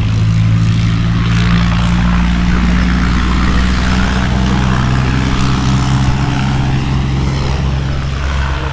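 An unseen engine running steadily with a low, even drone and a hiss above it.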